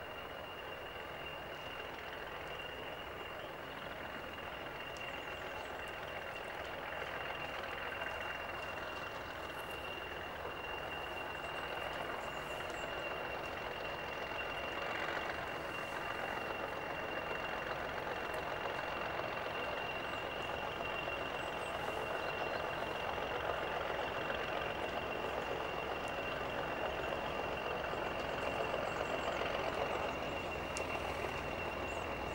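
Diesel shunting locomotive approaching slowly, its engine running steadily and growing louder as it nears. A steady high-pitched whine runs throughout.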